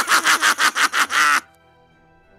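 A man's villainous laugh, fast and breathy at about seven pulses a second, stopping about a second and a half in; faint background music carries on under it.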